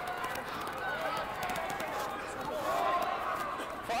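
Rugby players shouting short calls to one another during open play, picked up by pitch-side microphones, with scattered knocks and footfalls on the turf.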